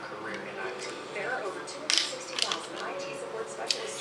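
A few light clicks and taps of drink containers handled on a table, including a plastic lemonade bottle being uncapped, under faint background talk.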